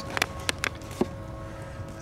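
A few short clicks and taps, about four in the first second, then a faint steady hum. The clicks fit handling noise as a book is picked up.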